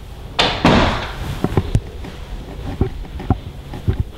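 An interior door being shut: a short rush of noise with a knock under a second in, followed by a few scattered light taps.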